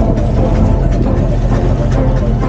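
2022 Sea-Doo GTX 300 Limited personal watercraft running steadily under way, its supercharged three-cylinder Rotax engine giving a constant drone.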